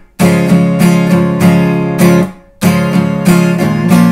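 Acoustic guitar strummed in a down, down, palm-muted, down, up, down, up pattern. There is a brief break about halfway through, at a chord change.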